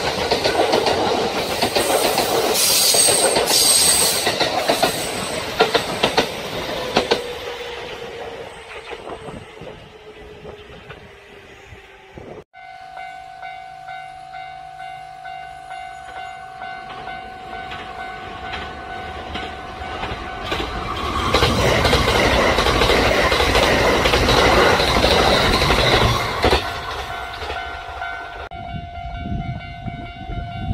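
Kintetsu electric trains passing at speed, wheels clattering over the rail joints: one pass loud at the start, fading away with a slowly falling whine, and a second loud pass about three-quarters of the way through. After an abrupt break near the middle, a steady high tone sounds through the rest.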